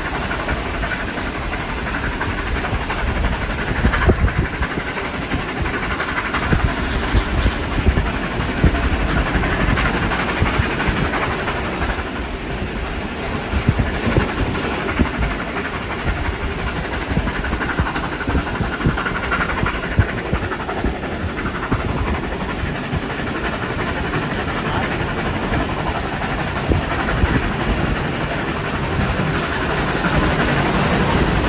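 Heritage passenger carriage rolling along the track behind a steam locomotive, heard from inside the carriage: a steady rumble of wheels on rails with scattered sharp clicks over rail joints.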